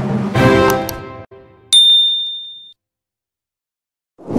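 Background music with sustained chords dies away in the first second, then a single bright bell ding rings out and fades over about a second: a notification-bell sound effect for a subscribe-button animation.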